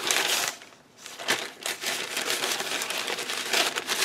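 A packaging bag crinkling and rustling as hands rummage through it, with a brief lull about half a second in.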